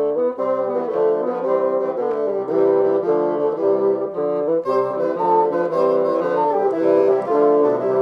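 Bassoon ensemble playing a medieval round, several bassoon parts overlapping in canon, with a moving pattern of short notes several to the second.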